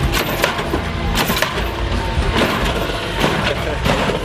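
Lowrider sedan's hydraulic suspension being worked from the switches, the front end hopping, with a run of irregular clanks and bangs as the suspension throws up and the wheels come down on the pavement. Music plays along with it.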